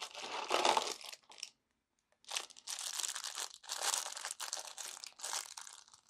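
Cardboard advent calendar door being pulled open, then a small clear plastic polybag of Lego pieces crinkling as it is drawn out and handled. The sound comes in two stretches: short crackles in the first second and a half, then after a brief pause a longer run of crinkling.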